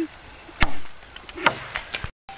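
A long knife chopping into wood at ground level: two sharp strikes about a second apart, with a few lighter knocks between them.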